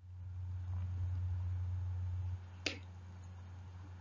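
Low, steady hum of the recording's background noise, with one short click a little past halfway through.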